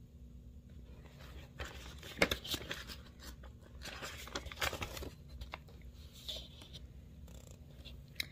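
Paper pages of a picture book being handled and turned: soft rustling and crinkling with a few sharper flicks, starting about a second and a half in and dying away about five seconds in.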